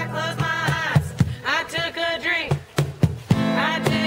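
Acoustic guitar strummed in an acoustic blues arrangement, with a cajon played by hand keeping the beat in sharp, regular slaps, and a sung vocal phrase over it about halfway through.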